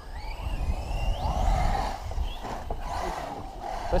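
Brushless electric RC cars running at a distance, their motor whine gliding up in pitch as they accelerate, over a low wind rumble on the microphone.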